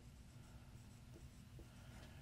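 Faint dry-erase marker writing on a whiteboard, over a low steady room hum.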